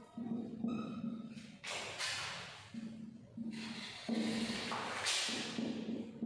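Marker pen writing on a whiteboard: three scratchy strokes, each under a second, with a short squeak about a second in, over a low hum that comes and goes.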